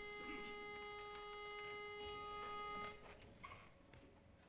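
Pitch pipe holding one steady note, giving the barbershop chorus its starting pitch, then cutting off about three seconds in.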